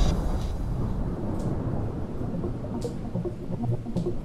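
Breakdown in a hands-up dance track after the beat drops out: a low rumbling, thunder-like noise with two faint swooshes, and soft synth notes starting to come in during the second half.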